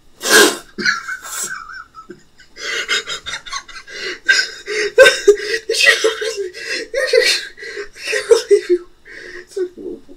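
A person laughing hard for several seconds in quick, breathy bursts at a steady pitch, after a short burst of breath at the start.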